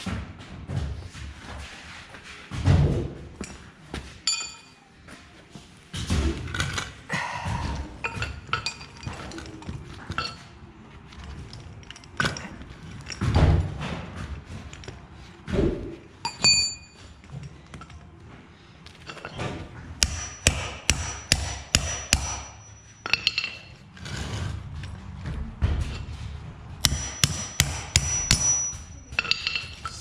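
Hammer blows on steel roller chain resting on a wooden block, driving the links apart to separate the chain. Scattered heavy knocks come first, then two quick runs of several metallic strikes a second with a thin ringing ping, about two-thirds of the way in and again near the end.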